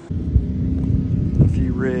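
Off-road vehicle engine idling with a steady low hum, starting suddenly just after the beginning, with wind on the microphone.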